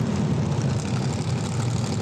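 Engine of a 1934 Ford sedan-bodied dirt-track race car running steadily as the car rolls at low speed, an even, low drone.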